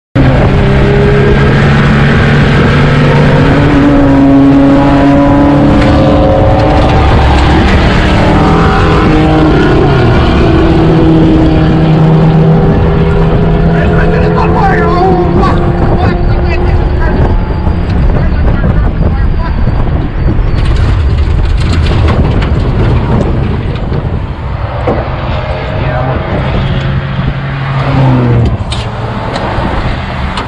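Race car engine at speed, heard from inside the open, caged cockpit with heavy wind noise. The engine holds a steady note, then a little past halfway the driver shouts and the note breaks up and fades into wind and rattle as the transmission fails.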